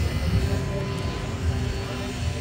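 Outdoor street noise: a low rumble with a faint, steady motor-like hum running through it.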